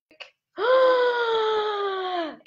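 A woman's long, drawn-out vocal 'oooh' of suspense, one held note that sags slowly in pitch and drops away at the end.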